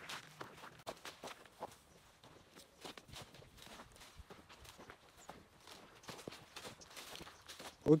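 Faint footsteps of people walking through tall dry grass, the grass brushing and crackling underfoot in irregular steps.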